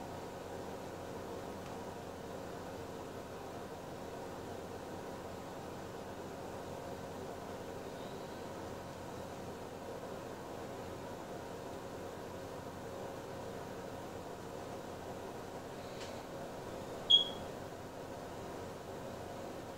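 Steady room hiss with a faint low hum. Near the end comes one brief, sharp, high-pitched chirp.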